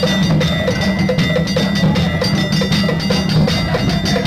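Afro-Cuban carnival percussion ensemble playing a steady, driving rhythm: hand-held metal pieces struck with sticks ring like cowbells over a bed of low drums.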